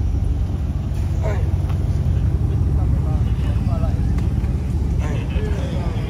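Dodge Charger Scat Pack widebody's 6.4-litre HEMI V8 idling close by, a steady deep idle with no revs. Brief bits of men's voices come over it.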